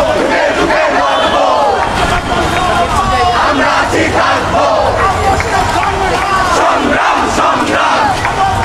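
A marching crowd of protesters shouting slogans, many voices at once.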